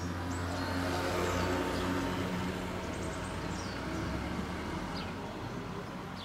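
A motor vehicle's engine hum passing by, swelling about a second in and fading away toward the end, with short bird chirps over it.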